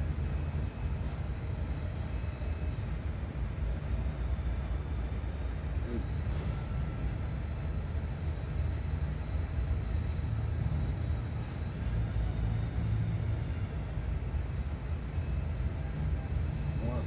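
Steady low rumble of outdoor background noise, with no clear events in it.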